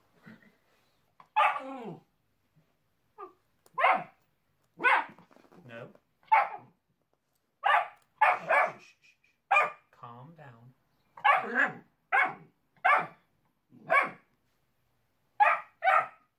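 Hungarian Vizsla puppy barking: about fifteen short, sharp barks spread evenly, some coming in quick pairs or threes.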